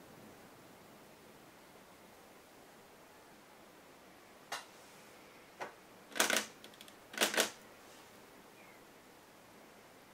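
A make-up brush working powder eyeshadow in its pans: about six short scrubbing and tapping sounds in the middle, the last four in two quick pairs, over quiet room tone.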